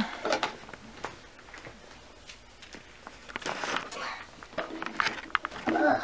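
Light clicks, taps and knocks of toy cake pieces and doll dishes being handled on a doll table, with a brief soft child's voice near the end.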